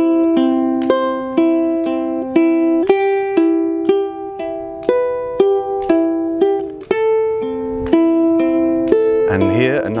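Ukulele fingerpicked in a steady looping pattern, single plucked notes about two a second, on a C chord and then changing to A minor about seven seconds in. A voice starts speaking right at the end.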